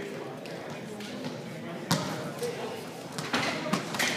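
A sharp volleyball impact about two seconds in, then a few lighter thuds near the end, over low chatter in a gymnasium.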